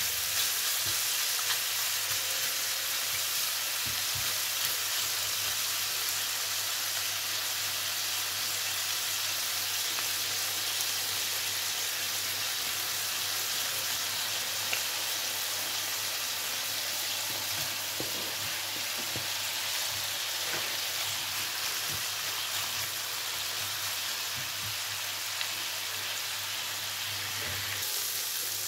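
Chicken thigh pieces with onion, ginger and garlic frying in sunflower oil in a pan: a steady sizzle, with a few faint clicks as a spatula stirs them.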